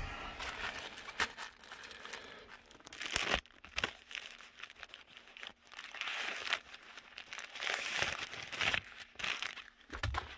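Irregular crinkling and rustling from something being handled close to the microphone, in uneven bursts with scattered small clicks.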